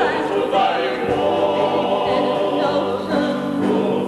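Several singers singing together in operatic style, holding notes, in a live stage performance.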